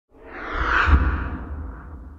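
Intro logo sound effect: a whoosh over a deep low rumble, swelling to its loudest just under a second in, then fading away.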